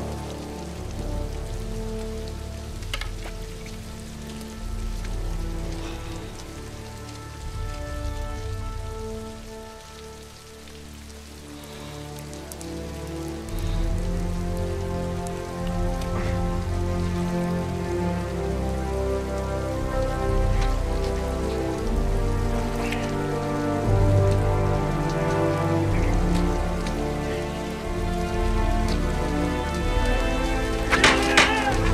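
Steady heavy rain falling, under slow music of long held low notes that fades somewhat around ten seconds in and swells louder from about fourteen seconds in.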